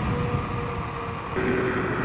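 Electric scooter riding: a steady motor whine over road and wind noise. About a second and a half in, the whine changes abruptly to a lower pitch.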